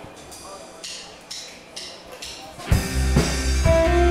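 A live worship band starts a song: a few light drum taps about two a second count in, then the full band (drum kit, bass and electric guitar) comes in loudly near the end.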